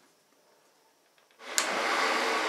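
Near silence, then about one and a half seconds in a countertop blender switches on with a click and runs loud and steady, briefly mixing flour into carrot cake batter at medium speed.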